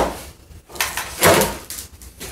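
A wooden pallet being turned around by hand on a concrete floor: a sharp knock right at the start, then a louder scrape and thump of wood against the floor about a second in.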